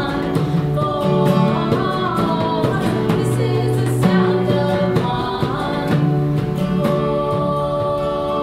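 Women singing a song together, accompanied by a strummed acoustic guitar.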